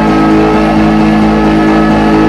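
Loud trance music: a held synthesizer chord of several steady tones, with no beat.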